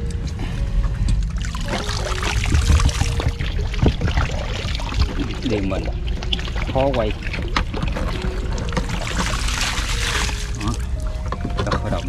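A steady low rumble, with scattered clicks and rustles of a plastic mesh net and a plastic water jug being handled, and a voice or tune in the background.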